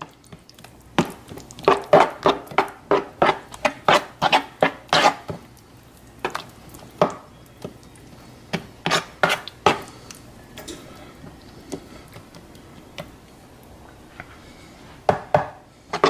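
A metal spoon stirring a thick, chunky shrimp cocktail in a bowl, knocking and clicking against the bowl's sides in quick irregular strokes. The strokes come in bursts of a few a second, thin out into a quieter stretch past the middle, and pick up again near the end.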